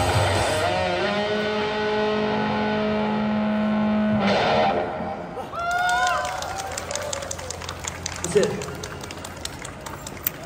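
Electric guitar and singer hold the last note of a live rock song, which cuts off sharply about four and a half seconds in. Scattered clapping and whooping cheers follow.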